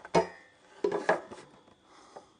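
Pine board and steel try square being handled: a few short knocks and rubs of wood and metal, one near the start and a couple about a second in.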